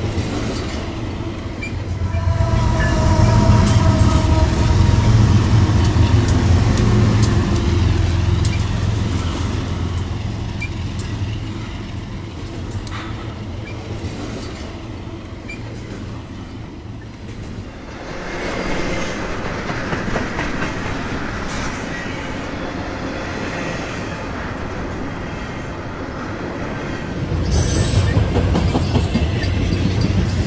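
Double-stack intermodal freight train rolling past, its wheels clacking over the rails, with a thin squeal of wheels on the curve in the first several seconds. Near the end, diesel locomotives approaching add a strong low rumble.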